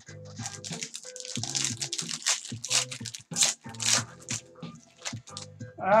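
Foil card-pack wrappers crinkling and tearing in a quick irregular crackle as packs are opened by hand, over background music.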